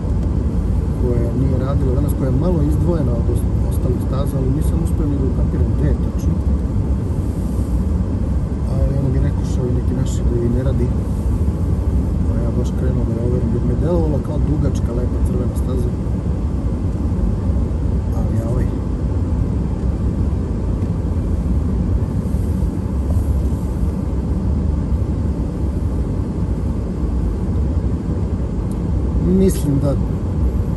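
Car cabin noise while driving: a steady low rumble of tyres and engine on asphalt, heard from inside the car.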